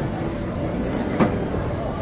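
Metal turnstile turning as someone pushes through it, with one sharp clunk about a second in. A steady low mechanical rumble runs underneath.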